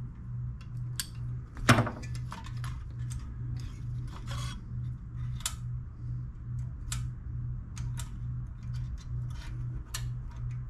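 Small metallic clicks and clinks of pliers and a spring hose clamp being worked onto a rubber fuel line at a small-engine carburetor, with one sharper click about two seconds in. A low hum pulses about twice a second underneath.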